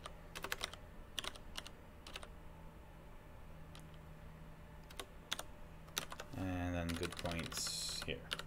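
Computer keyboard typing: irregular single keystrokes, spaced apart, as a word is typed, corrected and finished. A short murmur of a man's voice comes in near the end.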